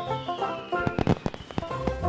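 Firework sound effect over music: a whistle falling in pitch over about a second and a half, with a quick run of crackling bangs about a second in.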